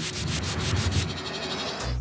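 A hissing, rasping sound effect for a puff of spray or smoke, with quick crackles in its first half second, that stops suddenly shortly before a low steady music drone returns.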